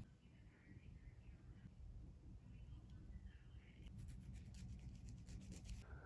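Near silence: quiet room tone with faint handling sounds, a few light clicks and rustles in the last two seconds.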